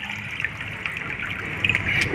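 Steady sound of water trickling and dripping in a rain-soaked garden.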